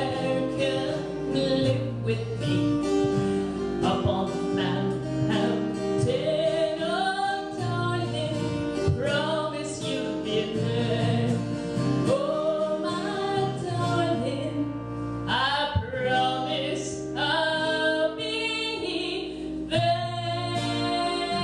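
Live acoustic folk song: strummed acoustic guitar under a woman's singing melody.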